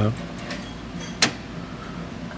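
One sharp metal click a little over a second in, from the steel foot pedal and its cable being handled, over a faint steady hum.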